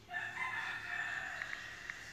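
A rooster crowing in the background: one long call of a little over two seconds. Light taps on a phone's on-screen keyboard come in during the second half.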